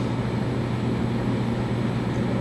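Steady low hum with an even background hiss: the room's constant background noise, without a change or a distinct event.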